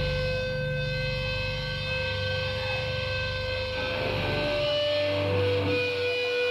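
Electric guitar feedback ringing through stage amplifiers right after the band stops playing: several steady high tones held on, over a low rumble that drops away about two-thirds of the way through.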